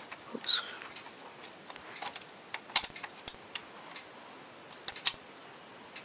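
Scattered sharp clicks of plastic LEGO parts as the ship model's anchor winch is turned and handled, a few isolated ones at first, then a quick cluster about halfway, then two more near the end.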